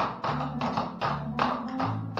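Clogging taps on a wooden floor, a quick run of strikes in time with a recorded country song.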